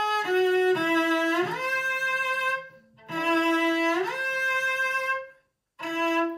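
A cello, bowed, playing a shift: lower notes slide audibly up to a higher held note, then the same shift is played again after a short break, a passage repeated for intonation practice. A new low note starts near the end.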